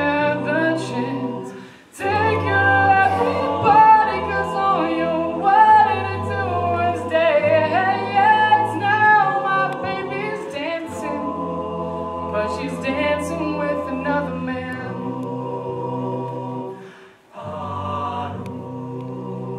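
An a cappella vocal group singing: a male lead voice over held backing harmonies, a low sung bass line and beatboxed percussion clicks. The whole group cuts out briefly twice, about two seconds in and near the end.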